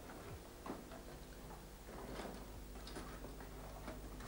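Faint, irregular small ticks and knocks over a steady low hum.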